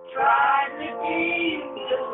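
A song with a singing voice playing from a white-label 7-inch vinyl test pressing on a turntable, picked up by a phone's microphone, which makes it sound thin with no top end.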